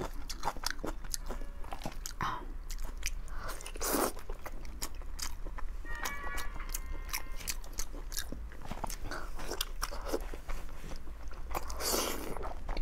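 Close-up eating sounds: a person biting and chewing sticky, gelatinous braised meat, with many small wet clicks and smacks.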